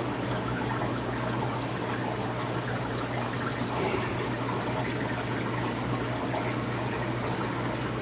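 Air bubbling up through an aquarium's sponge-filter airlift tube and air line, a steady bubbling wash of water, over a low steady hum.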